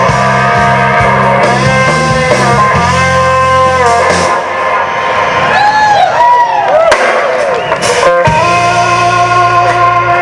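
A live blues-rock band plays an instrumental passage led by electric guitar, with sustained notes bent up and down. The bass and drums drop out for a few seconds in the middle, leaving the guitar bending notes alone, then the full band comes back in.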